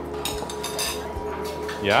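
Soft background music with held notes, and light clinks of spoons and utensils against metal pans and bowls as curry is stirred.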